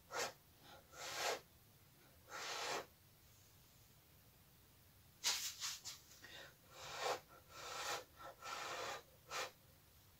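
Short puffs of breath blown from the mouth onto wet acrylic paint to push it across the canvas in a Dutch pour blow-out. A few puffs come first, then a pause, then a quicker run of puffs from about halfway.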